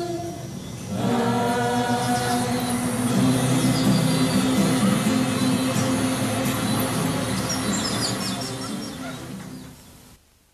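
A song sung by a choir of voices. It dips briefly, comes back about a second in, then fades out near the end.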